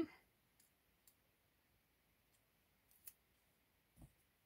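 Near silence with a few faint, short clicks, the clearest a little after three seconds in: light handling of the coloring book's paper pages.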